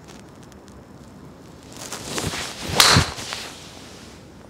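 Wilson D9 driver swung and striking a golf ball: a rush of noise builds for about a second, then a single sharp crack of impact near three seconds in, the loudest sound, fading quickly.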